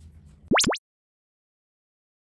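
Editing sound effect: two very quick rising-pitch sweeps about half a second in, with dead silence after. Background mallet-percussion music cuts off just before them.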